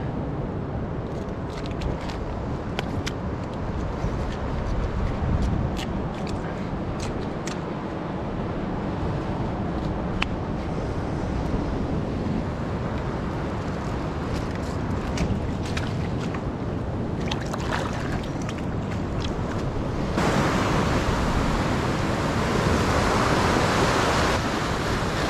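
Ocean surf washing over a rock shelf, a steady wash of noise, with scattered small clicks up close. Near the end the surf turns suddenly louder, with more hiss.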